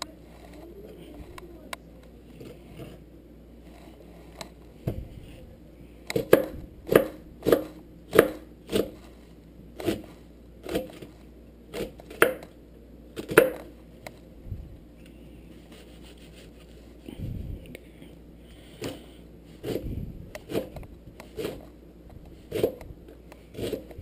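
Chef's knife dicing an onion on a cutting board: a steady run of knife strikes on the board, a bit under two a second, starting about six seconds in, then a few scattered strikes near the end.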